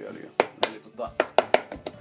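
Metal spoon stirring a wet herb-and-oil marinade in a plastic bowl, knocking and scraping against the bowl in about seven sharp taps.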